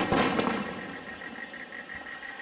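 Aerial firework shells bursting: a sharp bang right at the start, then two or three more cracks within the first half second, fading away afterwards.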